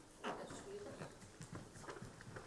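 Faint shuffling and soft footsteps of dancers walking across a studio dance floor to change lines, with faint voices in the room.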